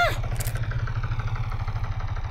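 Animated helicopter sound effect: rotor blades beating in a rapid, steady low chop, with a faint engine whine over it.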